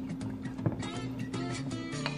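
Background music with plucked guitar over steady held notes, and a small click about two-thirds of a second in.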